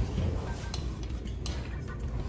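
Soup bowls and a spoon clinking lightly a few times as two people drink broth from large bowls, over a steady restaurant background rumble. The loudest clink comes right at the start.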